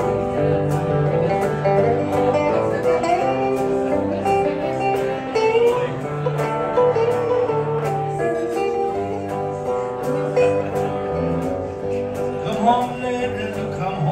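Live small-band music played on electric guitars, a continuous instrumental passage with some gliding notes in the melody.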